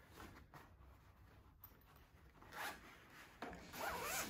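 Zipper of a padded soft gun case being pulled open in short strokes, faint at first, with one brief pull a little past the middle and more near the end.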